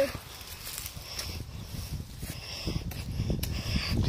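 Handling noise from a hand-held phone microphone: low rumbling and rustling, with a few faint clicks in the second half.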